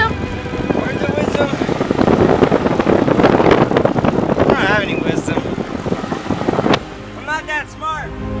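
Loud wind buffeting and road noise from a moving car, with short calls from voices over it; the noise cuts off suddenly near the end, leaving quieter in-car sound and voices.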